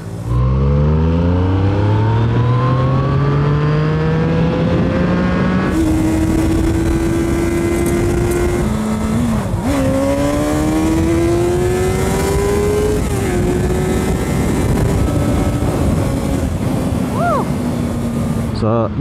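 Sport motorcycle engine accelerating hard, its revs climbing steadily for several seconds, easing briefly about nine to ten seconds in, then climbing again and levelling off, with wind rushing over the microphone.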